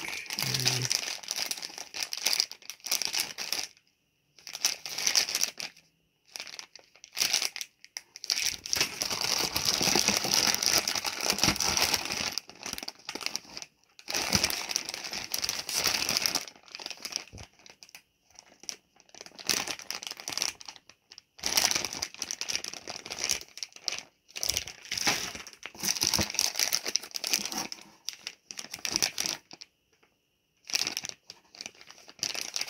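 Clear plastic parts bags crinkling and rustling as they are handled. The noise comes in irregular spells of a few seconds, with short silent gaps between them.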